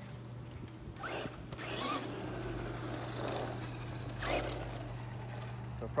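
Traxxas Rustler 2WD RC truck with a brushed motor on an XL5 speed control driving over asphalt in short throttle bursts, the motor whine climbing in pitch about a second in and surging again past four seconds, with tyre noise on the road.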